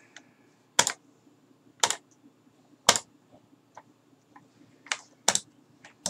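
Sharp single clicks from a computer keyboard and mouse being worked at a desk, about one a second with a short gap midway, over a faint steady low hum.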